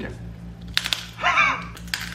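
Close-up crunching of a hard baked cheese puff (Brazilian Cheetos Assado) being bitten and chewed: a quick cluster of sharp crunches about three-quarters of a second in, and a couple more near the end.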